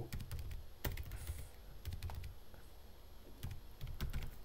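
A few scattered keystrokes on a computer keyboard, faint and unhurried.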